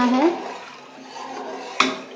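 A metal spoon stirring watery masala in a pressure cooker pot, a quiet swishing and sloshing, with one sharp clank of spoon against pot near the end.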